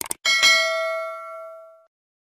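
A couple of quick clicks, then a single bright bell ding that rings and fades away over about a second and a half: an end-screen sound effect for the notification-bell button.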